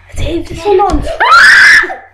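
A girl's voice making short cries that rise into a loud, high-pitched scream from just past a second in until near the end.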